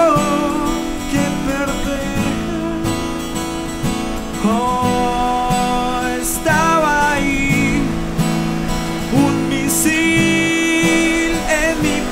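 Acoustic guitar strummed and picked in a song's accompaniment, with a voice holding long, wavering sung notes twice, about halfway through and near the end.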